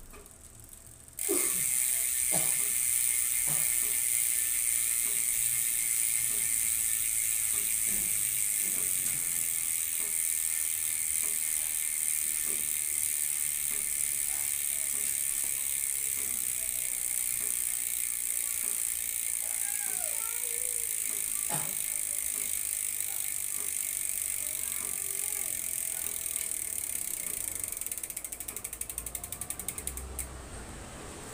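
GUB 6-pawl rear freehub of a bicycle freewheeling, its pawls clicking over the ratchet ring in a steady high buzz that starts suddenly about a second in.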